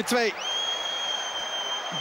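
Football stadium crowd noise just after a goal, with one long, steady high-pitched whistle starting about half a second in and held for over two seconds.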